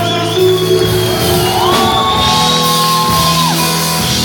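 Live band music in a large hall, sustained chords under shouting, with one long held high note that glides up about halfway through and slides off near the end.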